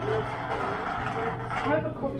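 Indistinct voices with some music-like sound, over a steady low hum from a Waratah electric train standing at the platform with its doors open.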